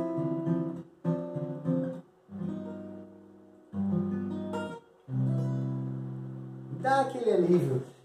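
Steel-string acoustic guitar playing five separate chords, each struck and left to ring out before the next. A man's voice comes in briefly near the end.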